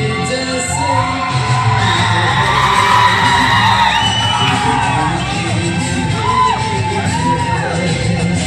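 A hall crowd of students cheering and whooping over loud pop music with a steady beat; the whoops and shouts crowd in from about a second in.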